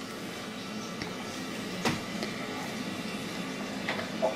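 A few light clicks and knocks from a toddler handling a water bottle, the loudest a little under two seconds in, over a faint steady hum.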